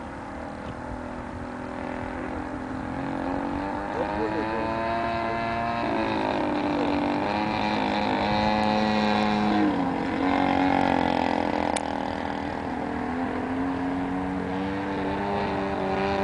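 The 50cc petrol engine of a radio-controlled Extra 330 model aeroplane running in flight overhead, its pitch stepping up and down, swelling louder in the middle and dropping in pitch about two-thirds of the way through.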